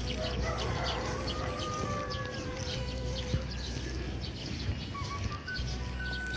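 Birds chirping in quick, repeated short notes over a steady low outdoor rumble, with a few long drawn-out tones alongside.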